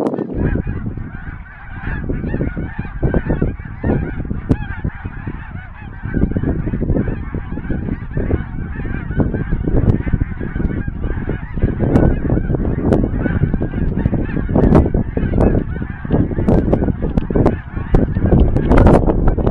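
Snow geese calling overhead, a continuous chorus of high, yelping honks from many birds, with strong wind buffeting the microphone underneath.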